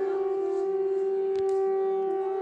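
Conch shell (shankha) blown in one long, steady, unwavering note, with a brief click about one and a half seconds in.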